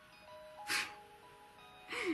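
Soft background music with a simple chiming melody, broken about two-thirds of a second in by one short breathy sound from the speaker.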